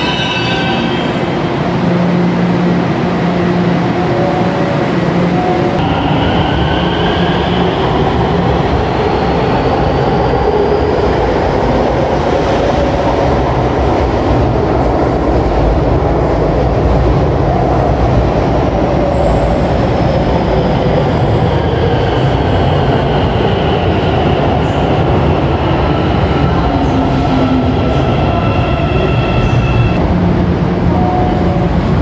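São Paulo Metro Line 4-Yellow train sounds over a steady rail rumble: the electric traction motors whine rising in pitch as a train accelerates out of the station, and later a whine falls in pitch as a train slows.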